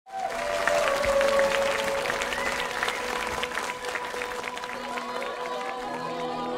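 Audience applauding, with many quick claps that thin out toward the end. A steady held note sounds underneath.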